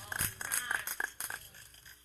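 Scattered hand claps from a small congregation, irregular and dying away after about a second and a half.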